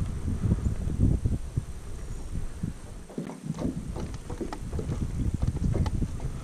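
Wind buffeting the microphone: an uneven, low rumbling noise in gusts that eases briefly about three seconds in.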